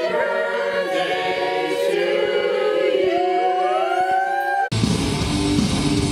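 A group of voices singing together unaccompanied, with rising swoops near the end. About three quarters of the way through it cuts abruptly to loud hard-rock music with electric guitar and bass.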